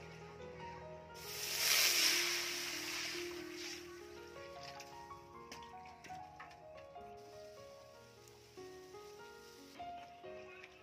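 Water poured into a wood-fired aluminium wok: a loud rush of splashing starts about a second in and fades over the next two seconds or so. Background music plays throughout.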